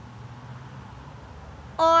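Quiet outdoor background with a faint low hum, then a man's voice briefly near the end.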